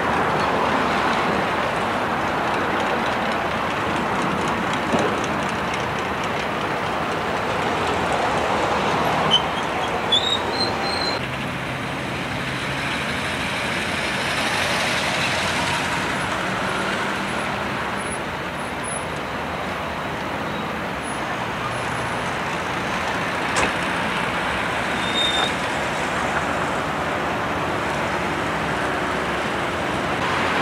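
City street traffic: cars, pickup trucks and buses passing, a steady wash of engine and road noise. A few brief high squeals come about ten seconds in, and a sharp click comes about two-thirds of the way through.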